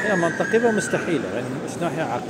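A man's voice speaking, over a distant siren holding a high tone that slides slightly down in pitch through the first second or so.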